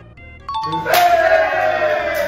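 A bright chime sound effect about half a second in, then a loud group outburst of cheering and shouting whose pitch slides slowly down, over a light background music track.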